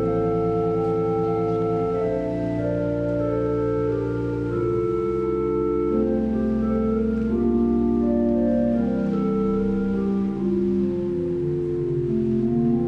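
Church pipe organ playing slow, sustained chords over held low bass notes, the harmony changing every second or two.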